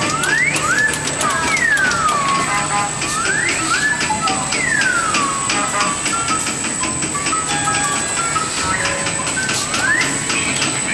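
Electronic sound effects from a coin-operated kiddie carousel ride: rising and falling siren-like whoops for about the first five seconds, then a simple beeping tune.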